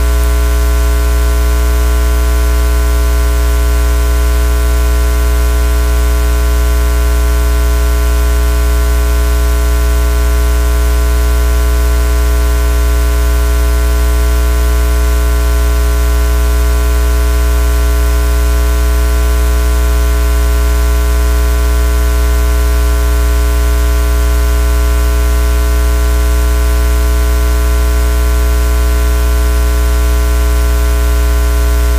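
Loud, steady low hum with several fixed tones above it and a hiss of static, unchanging throughout: electrical hum and noise on the audio feed.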